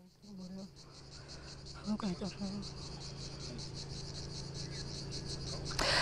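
Insects chirping in a high, fast, steadily pulsing trill over a low steady hum, with faint distant voices briefly near the start and about two seconds in.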